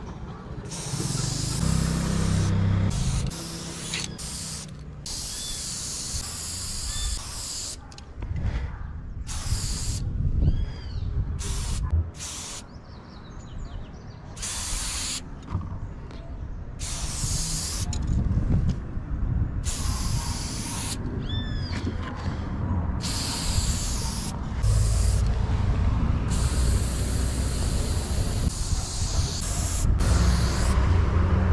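Aerosol spray-paint can hissing in repeated bursts, some short and some a couple of seconds long, with gaps between them, as the inside of a graffiti letter is filled in.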